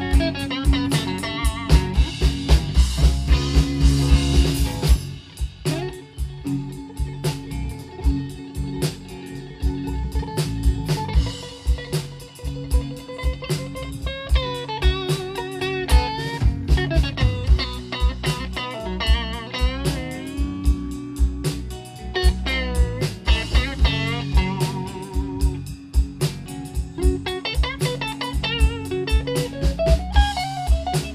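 Live blues band playing an instrumental passage: lead electric guitar playing bent-note lines over bass guitar, rhythm guitar and a drum kit keeping time.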